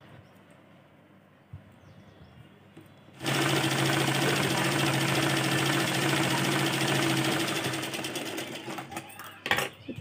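Black Deepa sewing machine stitching fabric. After about three seconds of quiet fabric handling it starts and runs steadily at a fast, even stitch rate for about five seconds, then slows and stops about nine seconds in.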